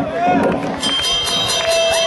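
Loud live punk rock show: shouting voices from the crowd and stage, then about a second in the band starts playing, with a held high tone and a steady run of cymbal ticks.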